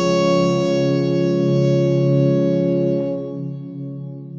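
Baroque ensemble with organ continuo holding one long sustained chord, which fades about three seconds in, the low notes lingering last.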